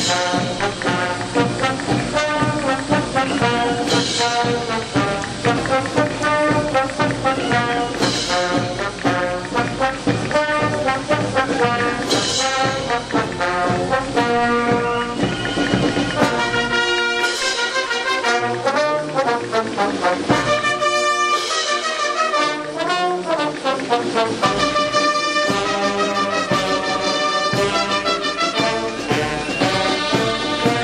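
High school marching brass band playing a march as it parades, trombones and trumpets over sousaphones and a steady beat. A bright crash comes every four seconds or so in the first half. The low brass drops out for several seconds past the middle, then comes back.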